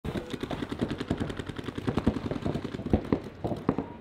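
Paintball markers firing rapid, overlapping strings of shots, several a second, thinning out near the end.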